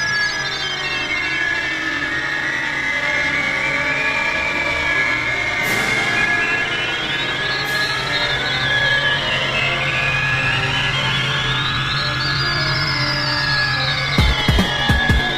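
Beatless breakdown in live electronic dance music: synth tones glide slowly up and down over a steady low drone, with no drums.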